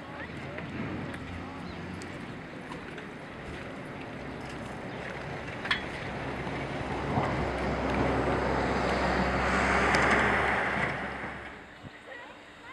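A motorboat engine running as the boat passes through the harbour: a low steady hum that grows louder with a rush of water to a peak about ten seconds in, then fades. A single sharp click a little before the halfway point.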